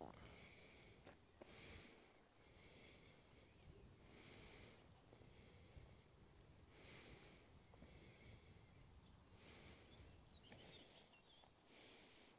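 Near silence: faint outdoor background with a soft, high hiss that comes and goes about every second and a half.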